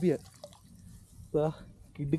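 Water dripping and trickling from a lifted cast net back into shallow river water, faint between short bursts of a man's voice, which are the loudest sounds.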